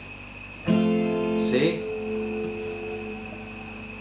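Steel-string acoustic guitar, capoed at the fifth fret, strummed once with a full chord under a second in; the chord rings on and slowly fades.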